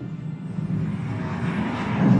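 A deep, loud rumbling sound effect played through an exhibit's loudspeakers in a rock cave, growing fuller near the end.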